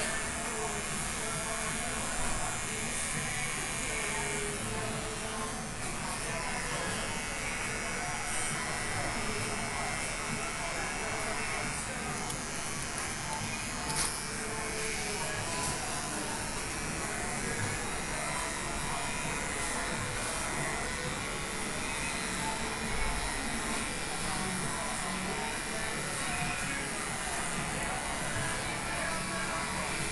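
Electric hair clippers running as they cut a child's short hair, with background chatter and music.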